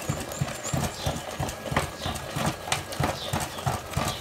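Wooden spoon stirring and mashing thick maize porridge (xima) in an aluminium pot, knocking and scraping against the pot in a steady rhythm of about three strokes a second.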